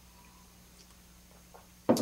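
Very quiet room tone with a faint steady low hum, and a man's voice starting right at the end.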